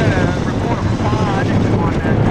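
F4U-4 Corsair's 18-cylinder Pratt & Whitney R-2800 radial engine and propeller, a steady loud drone as the fighter flies overhead, with voices audible beneath it.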